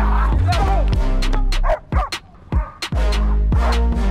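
A dog barking repeatedly over loud music with a heavy bass beat.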